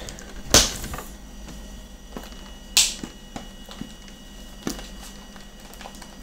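A shrink-wrapped metal trading-card tin being handled and picked at by hand: two sharp clicks, about half a second and nearly three seconds in, with light taps and ticks between.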